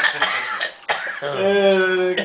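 A person coughs or clears their throat, there is a sharp click about a second in, and then a voice holds one steady, level note for most of the last second.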